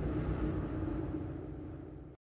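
Fading tail of an orchestral music sting: low timpani resonance with a few faint held tones, dying away steadily.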